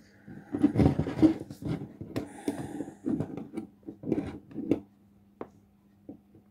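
Irregular plastic clicks and scrapes from a mechanical speedometer's housing and odometer mechanism being handled and worked with pliers, with one sharp click near the end. The odometer is being opened up to realign its number wheels, which have slipped.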